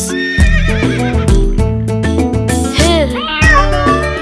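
Children's song music with a steady beat, and a recorded horse whinny sound effect over it shortly after the start.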